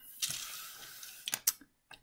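A hand pushing a pile of loose LEGO pieces across a table: a soft sliding hiss that fades over the first second, then a few sharp plastic clicks about a second and a half in.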